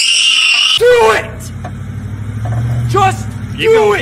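A brief loud, high hissing burst, then a vehicle engine running steadily, growing louder about halfway through. Short high-pitched voice sounds ring out over it.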